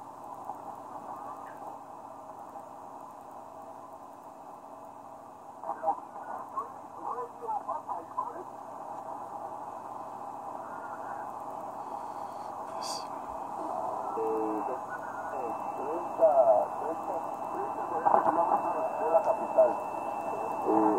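Amateur shortwave receiver tuned in lower sideband across the 40-metre band in 1 kHz steps: narrow-band static hiss with weak sideband voices that come and go and grow stronger in the second half. A steady whistle, a carrier heterodyne, comes in about two-thirds of the way through.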